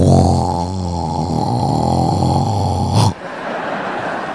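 A man imitating a loud snore into a microphone: one long, low snore of about three seconds that cuts off suddenly, followed by a quieter wash of audience laughter.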